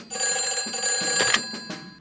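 Cartoon sound effect of a desk telephone ringing: one sustained ring lasting about a second and a half, fading away near the end.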